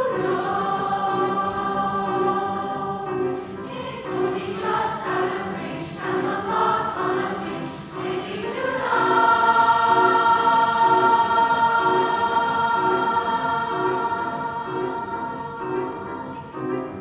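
Large mixed high school choir singing with piano accompaniment, the piano keeping a steady repeated pulse beneath the voices. About halfway through the choir swells louder into long held chords.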